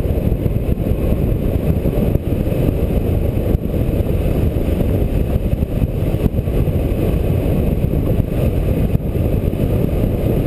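Steady, loud wind rush from the airflow of a hang glider in flight, buffeting the camera's microphone with a low, rumbling flutter.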